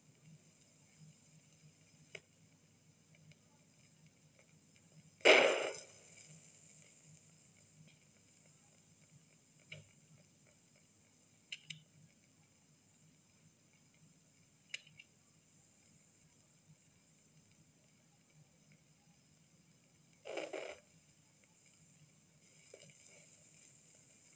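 Steady hiss and low hum of an old film soundtrack, broken by a loud sound lasting about half a second some five seconds in and a shorter, weaker one near twenty seconds, with a few faint clicks between.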